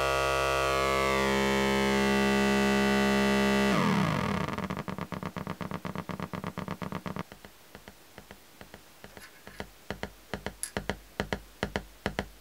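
Pulse output of a DIY Lockhart wavefolder (CGS52 synth module): a buzzy low synth tone drops in pitch about four seconds in as the input is slowed toward LFO rate, until it breaks up into a train of clicks. The clicks fall into an uneven rhythm of pulses and grow louder near the end.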